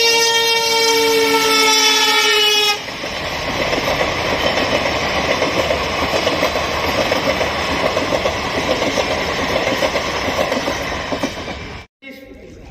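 Passenger train horn sounding for nearly three seconds, several tones at once sagging slightly in pitch, then the steady rumble of the coaches running past over the rails.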